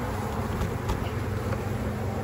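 Honeybees buzzing around an open hive, a steady low hum, with one faint click near the middle.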